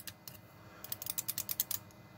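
Small black push-button switches on a homemade DMX512 lighting controller clicking as a thumb presses them. A few light clicks, then a quick run of about ten clicks in the second half.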